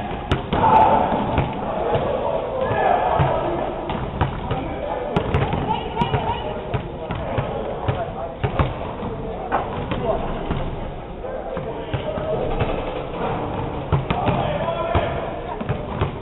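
Basketballs bouncing on an indoor court floor, a string of irregular sharp bounces and thuds that echo in the large hall, with indistinct voices in the background.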